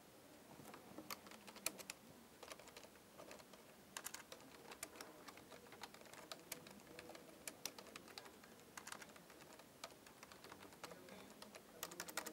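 Faint typing on a computer keyboard: irregular runs of key clicks with short pauses, starting about half a second in.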